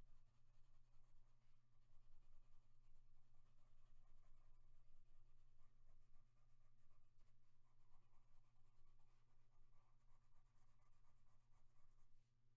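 Faint scratching of a coloured pencil shading back and forth on paper, over a low steady hum.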